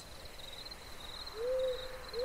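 A single owl hoot, one short held note that rises slightly, about a second and a half in, over faint cricket chirping: night-ambience sound effects under the narration.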